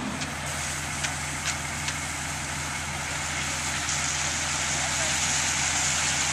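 Diesel engine of a ready-mix concrete truck running steadily, with a few light clicks in the first two seconds.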